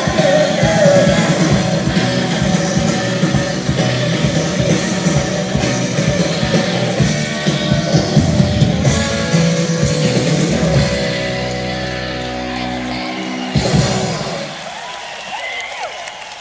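Live rock band playing, with drums, electric guitars and singing. The song ends on a held chord, closed by a final hit about 13 seconds in, and the sound drops away after it.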